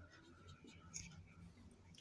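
Faint scratching of a marker pen writing on paper.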